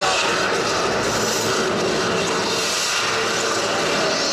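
A loud, steady, engine-like roar with no breaks, under a faint hum of steady tones.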